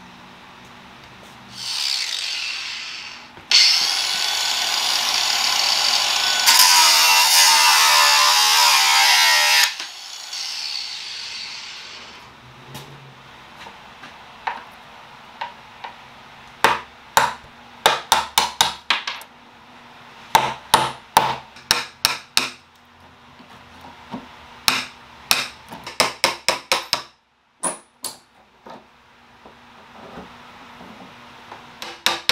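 A loud, steady rushing noise runs for about eight seconds and cuts off suddenly. Then come runs of sharp, quick taps: a hammer striking a slim metal tool held against a nail head to drive it out of the wooden frame of a cedar chest.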